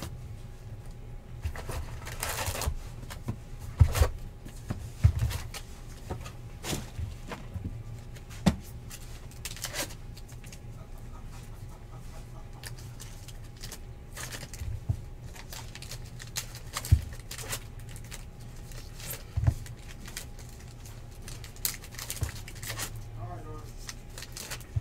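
Trading card packs being taken out of a cardboard hobby box and handled on a tabletop: scattered taps, rustles and short scrapes, with a pack torn open and its cards laid down. A low steady hum runs underneath.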